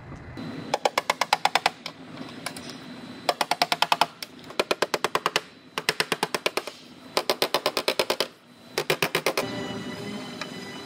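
Slide hammer on studs welded to a dented steel quarter panel, struck in six quick bursts of rapid metallic knocks, each about a second long, to pull the crushed metal back out.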